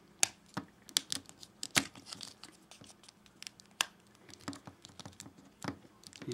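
Hard plastic clicking and scraping as a small plastic shield is handled and pressed onto an action figure's arm: irregular sharp clicks, thicker in the first two seconds.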